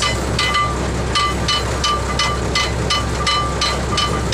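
Ship's cargo crane running steadily with a low engine hum, overlaid by quick, slightly irregular metallic clinking about three or four times a second.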